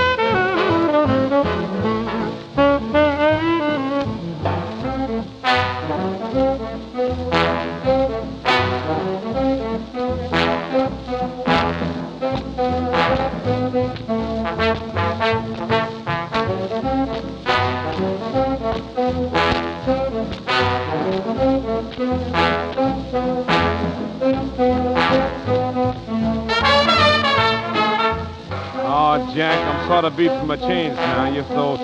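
Swing big-band instrumental passage led by brass, trombones and trumpets, over a steady beat, in the thin, narrow sound of an old recording.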